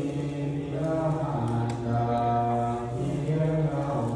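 Buddhist monk chanting in Pali in a low male voice, holding long notes that step between a few pitches.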